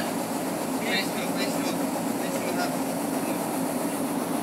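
Steady low drone of a ship's machinery on deck, with a fast even pulsing underneath and faint distant voices.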